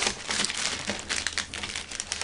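Plastic packaging bag crinkling and crackling in short, irregular bursts as it is handled.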